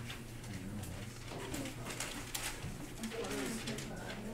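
Classroom background of students' low voices talking among themselves, with brief rustles and knocks of papers being handed in, over a steady low hum.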